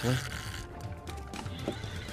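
Background music over the clicking of a spinning reel being wound in against a hooked fish.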